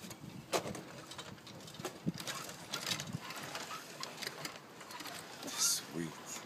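Outdoor ambience: scattered light clicks and knocks, with a few faint short bird calls near the end.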